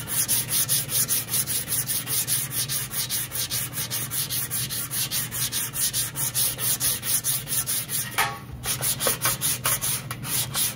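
Hand sanding block rubbing over a 20-gauge sheet-metal fender panel in quick, even back-and-forth strokes, with a short break a little after eight seconds. The sandpaper cuts the red Dykem layout fluid off the high spots and leaves it in the low spots that still need hammering.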